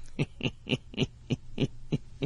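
A man's breathy laughter: a run of short, evenly spaced pulses, about three a second.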